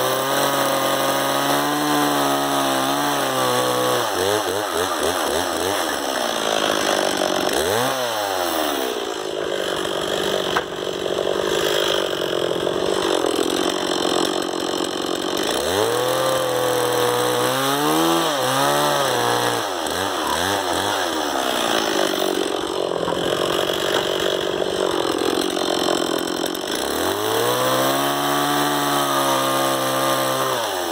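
Stihl two-stroke chainsaw cutting into a log, its engine speed rising and dropping back several times as it is throttled into the cut and eased off.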